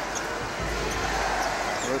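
Basketball being dribbled on a hardwood court over steady arena crowd noise, as a player works the ball and starts a drive to the basket.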